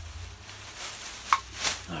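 Handling noise as an item is lifted out of a plastic bag: soft rustling with one sharp click or knock a little past halfway.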